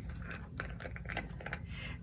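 Scattered light clicks and rustles of a small plastic jar of clear glitter having its lid twisted off by hand.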